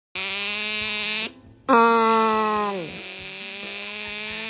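A sleeping otter snoring with a buzzy, humming tone. It breaks off briefly about a second in, then starts again, slides down in pitch and holds steady.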